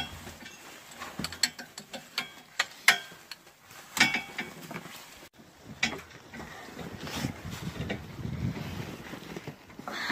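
Boots climbing a metal ladder set against a corrugated steel window-well wall: a run of irregular metallic clicks and knocks, the loudest about four seconds in.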